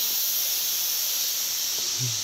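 A steady, high-pitched chorus of insects.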